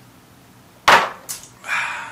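A drinking glass set down on a hard bar top with a sharp knock about a second in, a lighter tap after it, then a short breathy exhale.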